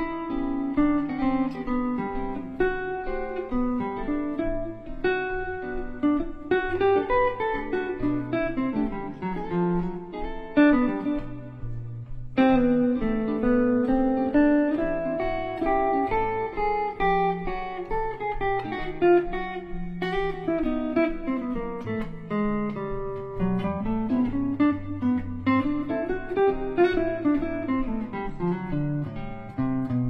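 Gibson L-5 archtop guitar playing jazz improvisation: flowing single-note lines that climb and fall over a looped chord progression.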